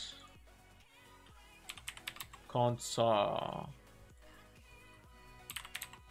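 Computer keyboard typing in two quick bursts of clicks, about two seconds in and again near the end, over faint background music.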